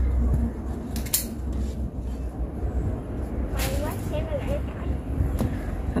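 Steady low rumble with two sharp clicks, one about a second in and another past the middle, and a brief faint voice just after the second click.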